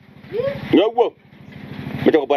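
An engine running steadily in the background with an even low pulsing, under a brief voiced utterance about half a second in.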